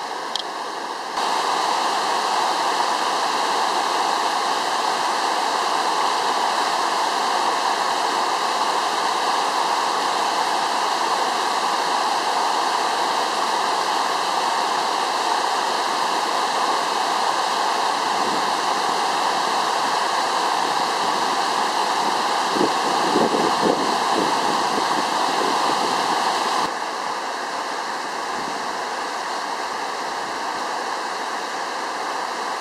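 Steady rush of flowing river water. It gets louder about a second in and drops back near the end, with a few faint knocks in between.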